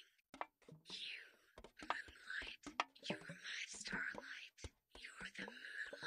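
A person whispering, reading aloud in soft breathy phrases, with short clicks between and within the words.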